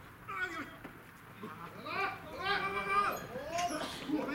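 Baseball players shouting and calling out during a live play: several raised voices, with a short call early on and then a run of long, high-pitched yells that grow loudest near the middle to late part.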